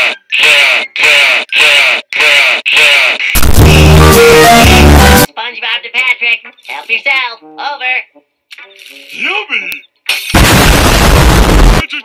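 Cartoon sound effects: two loud noisy blasts of about two seconds each, one about three seconds in and one about ten seconds in, set around a marshmallow being spat out mouth-first like a rocket launch. Short rhythmic vocal sounds come before and between the blasts.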